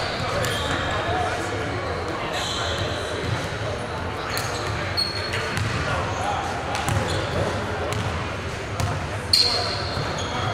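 Basketball gym during play: a ball bouncing on the hardwood, a few short high sneaker squeaks, and unclear voices of players and onlookers echoing in the large hall.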